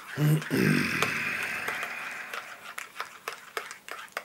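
A man's brief low vocal sound in the first second, then quiet small clicks and mouth noises.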